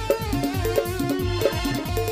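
Live Bengali orchestra band playing an instrumental passage with no singing: drums keep a steady beat under a sustained melody line.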